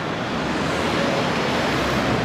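Steady traffic noise of a busy city street, a low rumble swelling slightly near the end.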